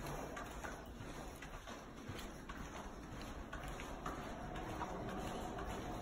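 Soft, irregular footsteps and light ticks of a person and a small dog walking on a carpeted floor. About halfway through, a faint steady tone comes in behind them.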